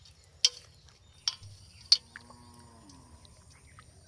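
A fish caught in a gill net flapping at the water's surface, giving three sharp slaps about two-thirds of a second apart.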